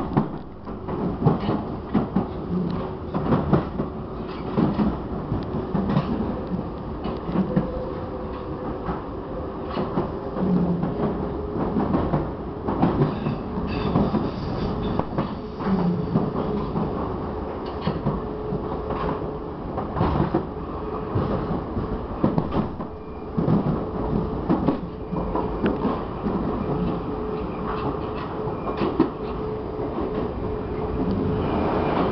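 Prague metro line A train running at speed, heard from inside the passenger car: a steady rumble with a faint steady hum and irregular clicks and knocks of the wheels on the track.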